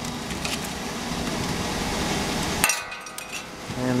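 Rear-loader garbage truck's hydraulic compactor running, with a steady hum under cracking and clanking as it crushes a couch. It stops abruptly with a knock about three seconds in.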